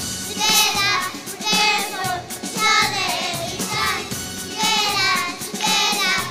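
Young children singing a song through microphones over recorded backing music.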